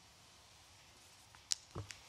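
Quiet room tone, then a sharp click about one and a half seconds in, followed by a brief soft low thud and another small click near the end.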